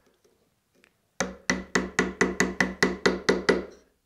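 Half-inch steel chisel struck in quick succession, about a dozen light strikes a little more than a second in, each with a short ring, driving it down into vertical-grain fir along a knife line.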